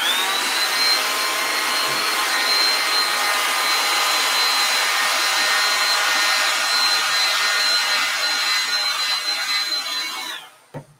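Hand-held hair dryer blowing over freshly painted paper to dry the paint. It gives a steady rush of air with a high whine that climbs as it switches on and drops away as it switches off at the end.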